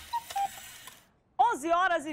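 A television bumper's music and sound effects fading out, with two short electronic beeps near the start, a moment of silence, then a woman starts speaking.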